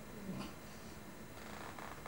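A faint, low vocal sound from a performer at a microphone, briefly louder about a third of a second in, over quiet room tone.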